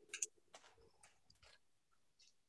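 Faint clicks and light scraping of thin wooden kit pieces being handled and slotted together: a sharper pair of taps right at the start, then a few smaller ones.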